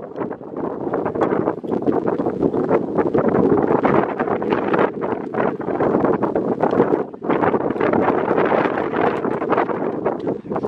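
Wind gusting over the microphone: loud, uneven noise that dies away for a moment about seven seconds in.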